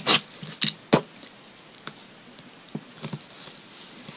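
Scraper dragged across a metal nail-stamping plate to clear off excess polish: a few short, sharp scrapes in the first second, then quieter with a few faint taps.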